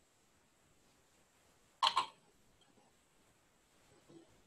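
Two short clicks in quick succession about two seconds in, over a near-silent room.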